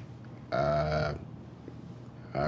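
A person's short wordless vocal sound, held on one pitch for about half a second, starting abruptly about half a second in.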